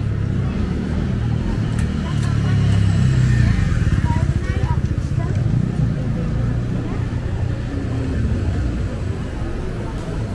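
City street ambience: a motor vehicle's low engine rumble swells about three seconds in and then eases off, with people talking.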